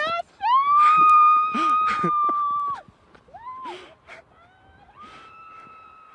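A woman's long, high-pitched held scream, about two and a half seconds, as she skis downhill for the first time in years, followed by a second quieter held cry near the end.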